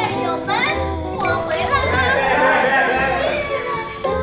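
Several people cheering and shouting excitedly all at once over light background music, the voices piling up in the middle of the stretch.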